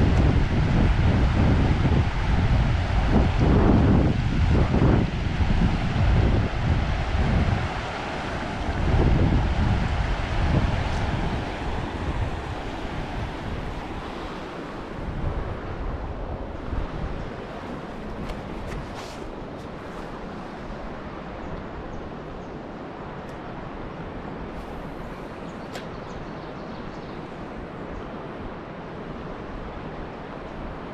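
Wind buffeting the microphone in heavy low gusts through roughly the first dozen seconds, over the steady rush of a shallow river running over rocks. The gusts die away and the river's rush carries on alone, a little quieter.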